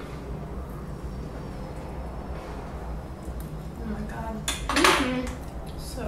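Metal fork scraping and lightly clinking against a bowl as zucchini-noodle pasta is tossed and forked up for tasting. A short, loud vocal burst comes about five seconds in.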